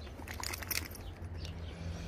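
Basset hound scrambling up from a dirt path: a brief scuffle and jingle of its collar tag about half a second in, over a low steady rumble.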